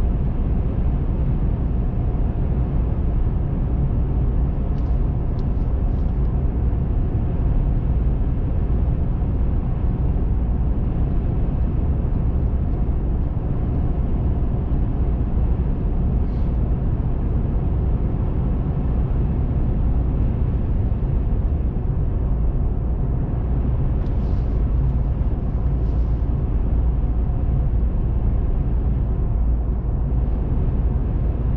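Steady low rumble of a car driving at road speed, tyre and engine noise heard from inside the car, with a few faint, brief high sounds about five seconds in and again later.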